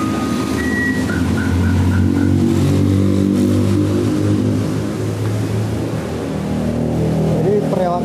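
Electronic car alarm siren cycling through its tones: a steady tone, then a higher steady tone, then quick beeps about four a second, stopping about two seconds in. A low drone of shifting pitch follows.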